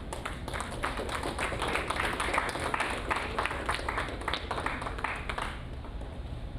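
Audience clapping, heard as a scatter of separate sharp claps rather than a dense roar, that dies away about five and a half seconds in.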